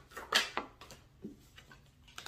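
Tarot cards being shuffled by hand: a few short swishing slaps of card against card, the loudest about a third of a second in, then fainter ones.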